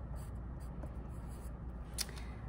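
Pencil scratching faintly on paper in short strokes, with a small sharp click near the end.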